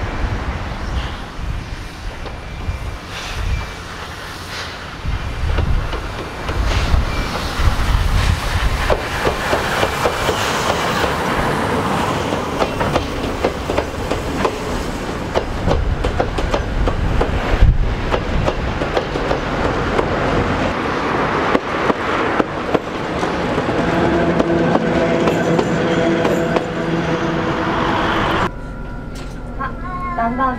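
Steam locomotive dressed as Thomas the Tank Engine running close past with its string of coaches: a loud passing-train rumble with wheels clattering over the rail joints. The sound cuts off suddenly near the end.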